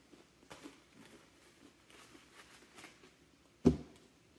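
Close-miked chewing of fried popcorn chicken: faint crunches and mouth clicks. Near the end comes a single sharp knock, the loudest sound here.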